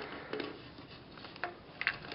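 Faint handling noise: a few soft clicks and light taps as small steel rifle parts and tools are moved on a cloth towel.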